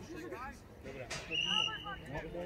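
Referee's whistle blown once, a steady high note lasting about two-thirds of a second near the end, signalling the free kick to be taken. Spectators' voices are heard under it.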